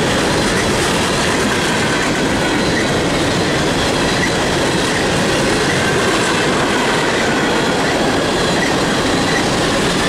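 Empty coal gondolas of a freight train rolling past: a steady rumble of steel wheels on rail with a rhythmic clickety-clack and a faint, steady, high wheel squeal.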